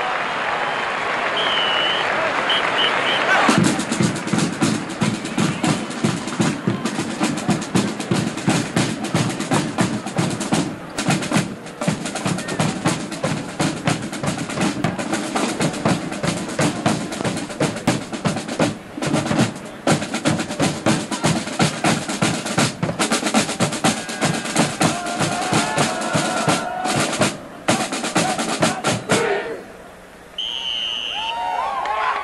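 Stadium crowd cheering and applauding, then about three and a half seconds in a marching band drumline starts a fast snare-led drum cadence that keeps a steady rhythm, with a few short breaks, until it stops abruptly just before the end.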